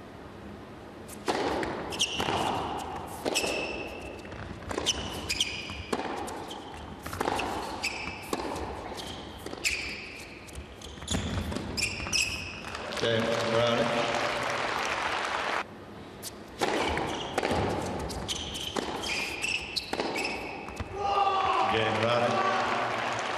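Tennis rally on an indoor hard court: the ball is struck by rackets and bounces on the court in a run of sharp knocks, with short high squeaks from the players' shoes.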